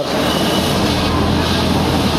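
Three-piston HTP high-pressure washer pump, driven by a single-phase electric motor, running steadily at full pressure while its nozzle sprays a jet of water with a loud, steady hiss over a low motor hum.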